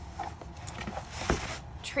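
Paper rustling and sliding as a planner's pages and a large sheet of craft paper are handled, with one sharp tap a little past halfway.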